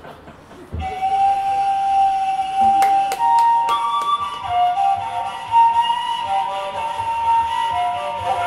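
A flute starting about a second in, playing slow, long held notes that step between a few pitches, with a few light clicks near the middle.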